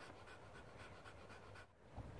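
Near silence, with a dog's faint, quick panting.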